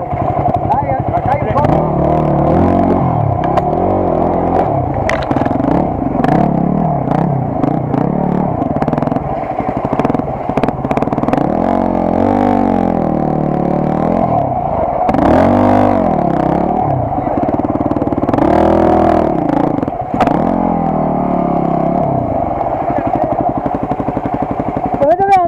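Enduro dirt bike engines running and being revved, their pitch rising and falling every second or two, with voices behind.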